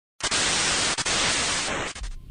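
A sudden burst of static hiss breaks in out of dead silence, runs evenly for about a second and a half with a brief drop about a second in, and cuts off just before the end.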